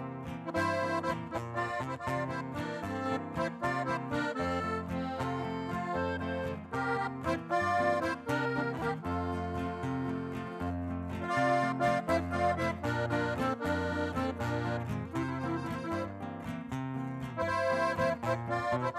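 Live band music led by a button accordion playing the melody, with guitar and a stepping bass line underneath, in a steady dance rhythm. No singing.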